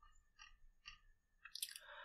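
Near silence with faint computer mouse scroll-wheel clicks, a few about half a second apart, as the document is scrolled. A short breath comes near the end.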